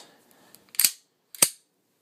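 Two sharp metallic clicks about half a second apart from a Smith & Wesson M&P9c pistol as its slide is slid back onto the frame rails and snapped into place during reassembly.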